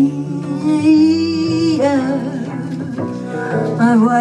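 A woman's singing voice holding a long note with vibrato for about two seconds, then moving on through shorter notes, over a small acoustic jazz band with double bass.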